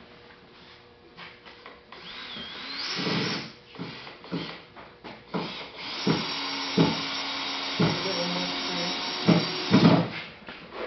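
An electric power tool motor whines up about two seconds in, then runs steadily through the last four seconds. Sharp knocks come at intervals throughout.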